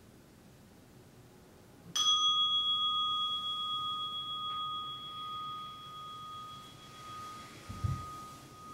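A meditation bell struck once about two seconds in, ringing on with a clear pure tone that slowly fades, marking the end of the sitting. A low thump comes near the end.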